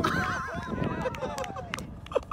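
A person's voice: a drawn-out yell with a wobbling, whinny-like pitch that slowly falls away, with a few sharp clicks in the second half.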